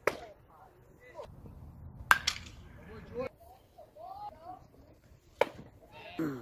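Three sharp cracks from baseball play, ball against bat or glove: one right at the start, the loudest about two seconds in with a short ring, and one near the end. Spectators' voices chatter between them.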